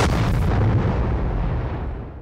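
Explosion sound effect: a deep, loud rumble from a blast that dies away slowly, fading out near the end.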